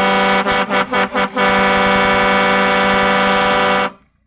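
Vehicle horn honking: about five quick toots, then one long steady blast that cuts off suddenly near the end.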